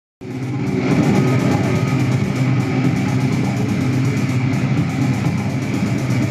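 Live experimental electronic noise music: a dense, steady drone of several low pitched tones with a fast, rattling flutter of noise above it, cutting in abruptly just after the start.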